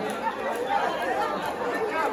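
Crowd chatter: many voices talking at once, with no single voice standing out.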